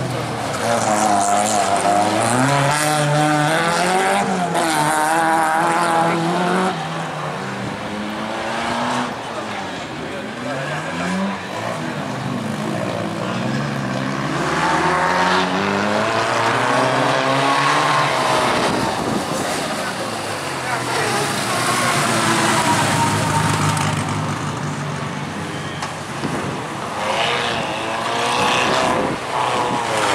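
Several autocross race cars running hard round the circuit, engines revving up and falling away again and again as they change gear and brake for corners, often more than one engine at a time.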